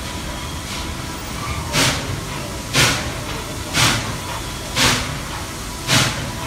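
Norfolk & Western 611, a J-class 4-8-4 steam locomotive, exhausting in slow, evenly spaced chuffs about one a second as it works a heavy train at low speed, over a steady hiss of steam.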